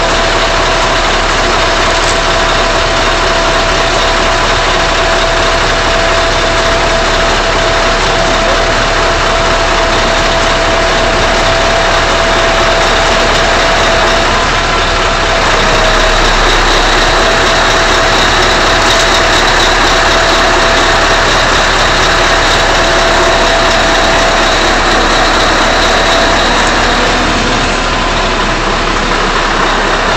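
Hoisting crane's motor running steadily, an even loud drone with a constant whine over it.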